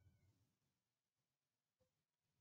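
Near silence: faint room tone, with a very faint brief high-pitched sound right at the start.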